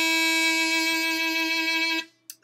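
Diatonic harmonica in A playing one steady single note with a full, bright set of overtones, held without wavering and cut off right at the end.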